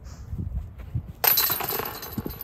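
Metal chains of a disc golf basket rattling and clinking, starting suddenly a little over a second in, as discs are pulled from the basket.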